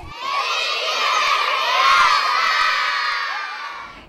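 A large crowd of children shouting and cheering together, swelling then fading out near the end.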